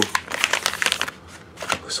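Pokémon card pack wrappers crinkling in the hands as the packs are handled, a quick run of crackles that dies down about halfway, with a few more near the end.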